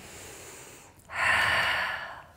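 A woman breathing audibly through a Pilates leg-lowering exercise: a faint breath, then a louder one about a second in that lasts most of a second.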